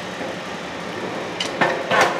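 Metal knocks and clicks from a rebar cutting machine being handled and checked by hand, coming in the last half second over a steady mechanical hum.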